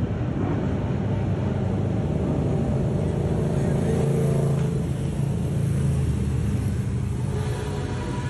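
Many sport motorcycle engines running together as a large group rides slowly past, a steady, even mixed engine rumble.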